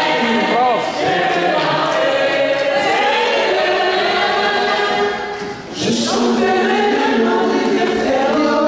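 Several voices singing a hymn together, held notes gliding between pitches, with a short break about five and a half seconds in before the singing picks up again.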